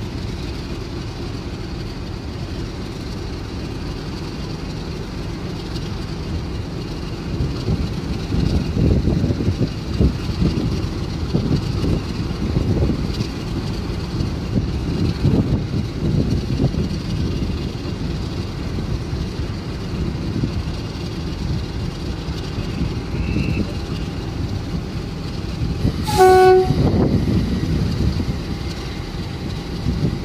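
Class 50 diesel locomotives' English Electric V16 engines running with a deep rumble as the loco-hauled train crawls slowly through the station, the rumble swelling for a stretch in the middle. Near the end comes one short blast on the horn.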